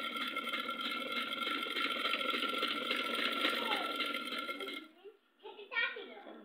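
Sewing machine running and stitching with a steady, rhythmic clatter, stopping abruptly about five seconds in. A voice is heard near the end.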